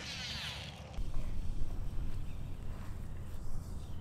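Wind buffeting the microphone, a steady low rumble that grows stronger about a second in. A short, thin hiss is heard in the first second.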